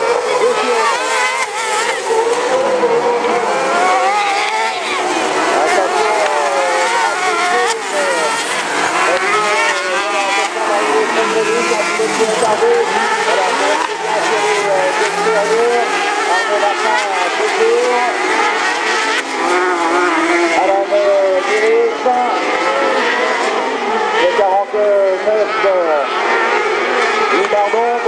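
Several single-seat racing buggy engines revving hard, their pitch rising and falling continuously as the buggies accelerate and brake around a dirt track.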